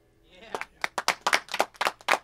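An electric guitar's last notes die away to near silence, then about half a second in a small group of people starts clapping, with separate, distinct claps several a second.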